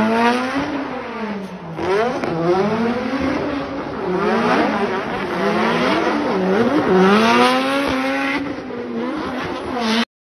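Nissan Silvia S14 drift car's engine revving hard, its pitch climbing and falling over and over as the throttle is worked through the drift, with tyres squealing underneath. The sound cuts off suddenly at the end.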